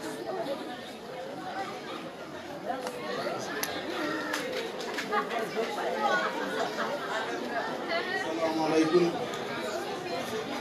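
A crowd of people chattering at once, a steady murmur of many overlapping voices with no single speaker standing out, and a few small clicks around the middle.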